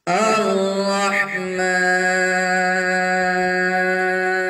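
Male voice reciting the Quran in melodic tajweed style, drawing out one long held note that wavers with ornaments for about the first second and a half, then holds steady.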